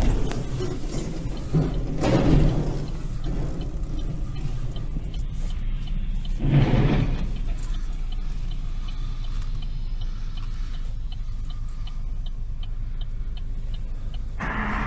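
Car cabin road noise on a wet highway: a steady low rumble, with two brief swells of rushing noise, one about two seconds in and one about six and a half seconds in, and a light regular ticking, about two a second, through the second half.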